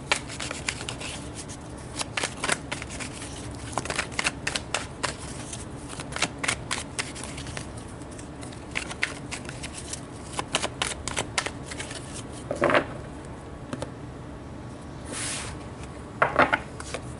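A tarot deck being shuffled by hand: runs of quick card clicks, with short pauses now and then.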